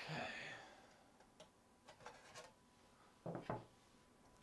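Quiet tabletop handling sounds: a brief rub at the start, a few faint clicks, then two knocks close together near the end.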